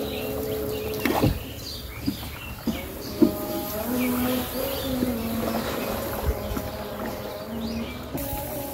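A slow melody of long held notes that step from one pitch to another, with bird chirps above it and a few sharp knocks.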